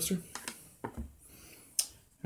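A few light clicks and knocks from a glass beer bottle and a coaster being handled on a tabletop, the sharpest click near the end.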